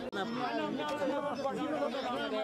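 Several people talking at once in overlapping chatter. The sound cuts out for an instant just after the start.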